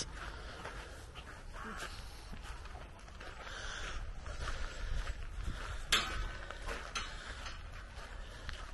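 Faint footsteps on a gravel path under a low steady rumble, with one sharper click about six seconds in.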